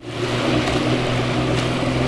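Engine of an uncrewed drone boat running steadily, a low even hum over the rush of its wake in the water.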